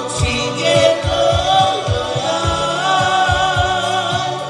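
Live male singing over a Korg Pa1000 arranger keyboard backing, with steady bass notes and a kick-drum beat of about two strikes a second.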